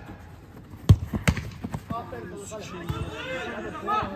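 A football struck hard on an artificial-turf pitch: one sharp thud about a second in, then a few lighter knocks of the ball. Men's voices shout on the pitch in the second half.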